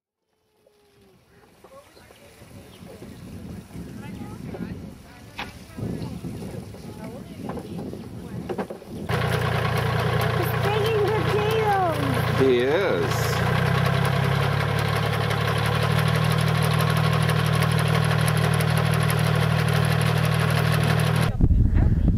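A compact farm tractor's engine running steadily under load as it pulls a potato digger, starting loud about nine seconds in after a fade-in of faint outdoor voices, and cutting off just before the end.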